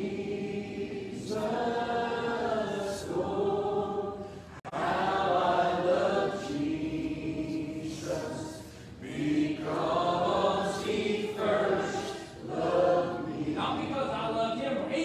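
A church congregation and choir singing an old hymn together, in sung phrases with short pauses between them. The sound cuts out for an instant about four and a half seconds in.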